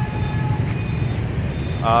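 Steady low rumble of street traffic, with a voice starting near the end.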